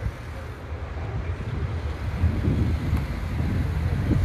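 Wind buffeting the camera's microphone: a low, rough rumble that grows stronger about two seconds in.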